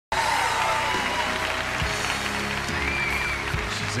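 Country band playing the instrumental intro of a song, with audience applause over it.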